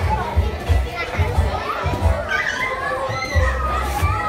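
Children playing and calling out, high voices most prominent in the middle, over background music with a pulsing bass line.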